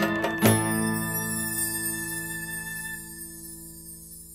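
Closing chord of a song, with acoustic guitar, struck about half a second in and left to ring out, fading steadily away.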